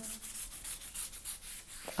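A wide wash brush loaded with water stroking back and forth across damp watercolour paper, a soft repeated brushing sound as the paper is wetted all over.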